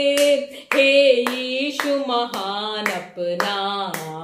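A woman singing a worship song unaccompanied while clapping her hands in time, about two claps a second.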